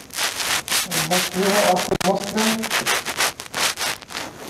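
Dry-erase marker writing on a whiteboard: a quick run of short, scratchy strokes, one after another. A man's voice murmurs briefly in the middle.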